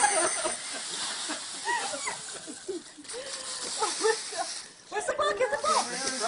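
Dry leaves rustling as a small dog digs and burrows through a leaf pile.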